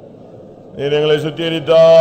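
A man singing a line of a Tamil praise hymn without accompaniment, in a chant-like style, holding long notes. It comes in loudly after a brief lull, about a second in.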